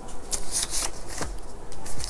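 Paper dollar bills rustling and crinkling as they are handled by hand, in several short crisp bursts.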